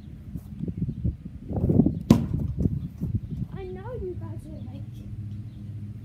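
A pitch thrown on a lawn: a rush of movement noise builds, then a single sharp smack about two seconds in, probably the ball striking something.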